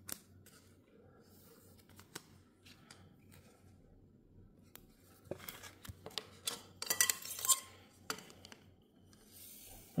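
A trading card being slid into a plastic card sleeve: faint crinkling and scraping of thin plastic with small clicks, mostly in the second half.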